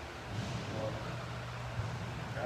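A steady low hum of room noise, with a faint brief voice sound about three quarters of a second in.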